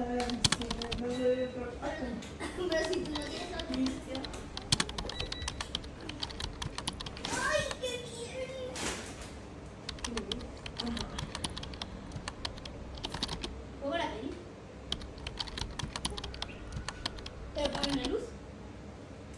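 Rapid, irregular light clicks and taps, with low voices now and then.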